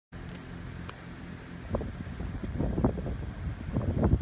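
A vehicle engine runs with a low, steady hum. From about a second and a half in, wind buffets the microphone in irregular gusts that grow louder toward the end.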